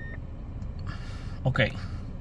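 A single steady electronic chime from a 2020 Nissan Versa's instrument cluster cuts off right at the start, signalling a malfunction warning message on the display. A low steady rumble runs underneath.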